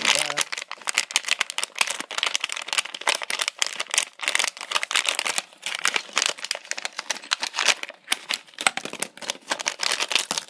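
A Lego minifigure blind-bag foil packet crinkling continuously as it is opened and shaken out. Small plastic Lego pieces drop onto the table among the crinkling.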